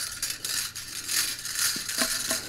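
Coiled steel magazine spring being pushed down into a Mossberg 590 shotgun's magazine tube, the coils scraping and jingling against the tube in a steady rattle.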